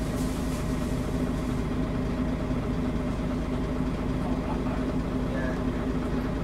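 Volvo Olympian double-decker bus's diesel engine idling steadily, heard from inside the upper deck, with a constant low hum.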